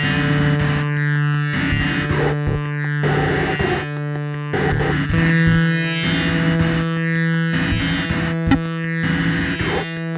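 Electronic music from an iPad: DM1 drum-machine beats run through a formant filter, over a held, distorted synth tone played from a MIDI keyboard. It is sent through a fuzz and granular-delay pedal chain into a bass speaker cabinet. The held tone shifts pitch about halfway through.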